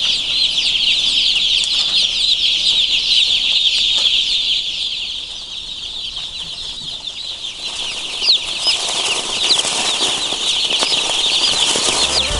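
A poultry house full of chicks peeping all at once, a dense chorus of many overlapping high cheeps that dips a little about halfway through.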